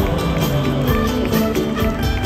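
Live band music with an electric bass line out front over a steady beat.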